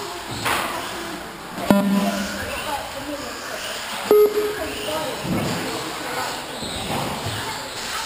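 Voices echoing around a large hall during an RC car race, with two sharp knocks about two and a half seconds apart. Each knock leaves a short ringing tone, and the first is the louder.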